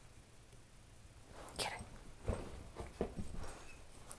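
Dachshund puppies playing on carpet: quiet at first, then a few short scuffles and knocks in the second half.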